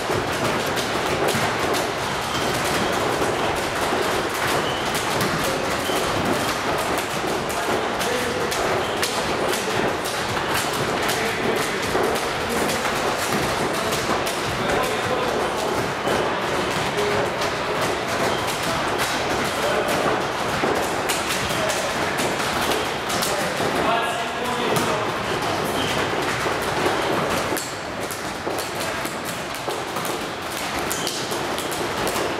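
Volleyballs being hit and bouncing on a gym floor, many thuds in quick succession over a steady hubbub of voices.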